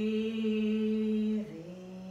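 A woman's voice holding a long, steady chanted note on the out-breath. About one and a half seconds in, it steps down to a lower, quieter note.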